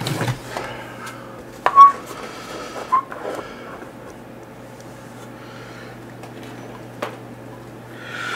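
Wooden deck board being handled and set down over a rover chassis: a few knocks and taps, the loudest just under two seconds in, with a low steady hum underneath.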